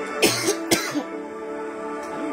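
A person coughs three times in quick succession in the first second, over soft background music of sustained chords.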